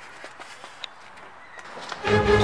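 Footsteps on a paved path, a few light, irregular steps over faint outdoor background noise.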